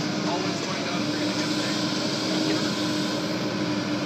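Excavator's diesel engine running steadily under load, with one constant droning tone, as the machine lifts a heavy chunk of brick and concrete.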